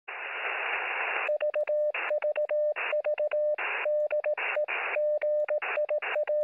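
Radio static hiss for about a second, then Morse code: a steady mid-pitched tone keyed in short and long beeps, with bursts of static between the characters.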